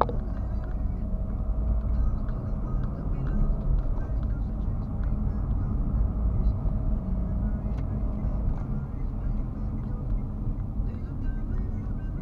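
Car cabin noise while driving, picked up by a dashcam inside the car: a steady low engine and tyre rumble, with a sharp click right at the start.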